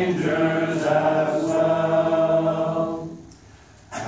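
A congregation of mostly men singing a metrical psalm unaccompanied, holding long notes. The line dies away about three seconds in, leaving a short gap before the next line begins at the very end.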